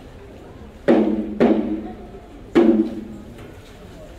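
A large ceremonial drum struck three times: about a second in, again half a second later, and once more about a second after that, each stroke ringing out briefly.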